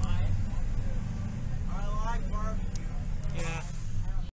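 Steady low engine and road rumble inside a moving bus, with voices talking briefly in the background.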